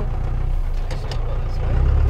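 Cummins 4BT four-cylinder turbo-diesel engine in a Jeep truck running at low speed, a deep steady rumble that swells slightly near the end.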